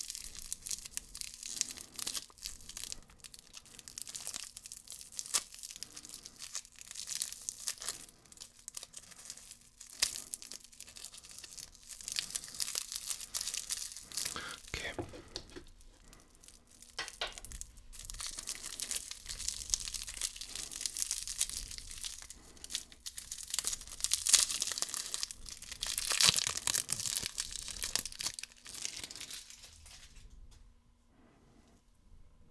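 Clear cellophane candy wrapper crinkling and tearing as it is picked apart and pulled off a hard swirled lollipop, close to the microphone. The crackling comes and goes and is loudest in the last few seconds.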